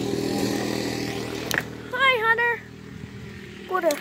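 ATV (four-wheeler) engine running at idle, with a click about one and a half seconds in; the engine sound drops quieter a little before three seconds in.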